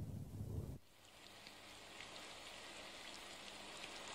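Storm sound effect: a low rumble of thunder that cuts off abruptly just under a second in, leaving faint, steady rain patter.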